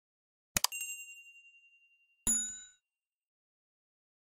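Sound effects for an animated subscribe button: two quick clicks with a ringing ding that fades away, then a brighter bell chime with several ringing tones a little over two seconds in.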